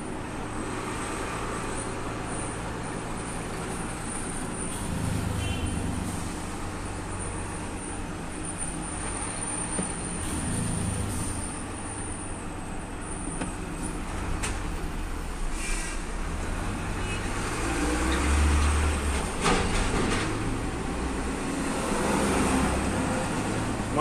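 Inside a heavy truck's cab while driving slowly in town traffic: the diesel engine drones steadily, its low rumble swelling a few times, with road and traffic noise around it.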